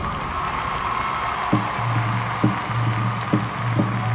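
A marching band's last chord dies away in the echo of a large domed stadium, a single high held tone fading out about a second in, over crowd applause and cheering. A low steady hum with a few short knocks comes in about a second and a half in.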